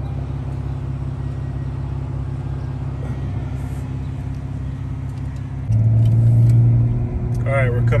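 Car engine and exhaust drone heard from inside the cabin, a steady low hum. About three-quarters of the way through it steps up suddenly and runs louder.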